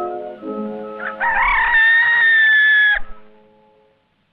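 Soft film-score music, then a rooster's cock-a-doodle-doo about a second in: one loud call of nearly two seconds that rises and then holds.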